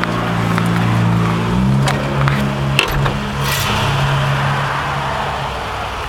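1954 Cadillac Series 62's 331 cubic-inch V8 idling steadily, heard from inside the cabin, running cleanly with no lifter tick. Its engine speed steps up slightly about a second and a half in, and a couple of light clicks follow.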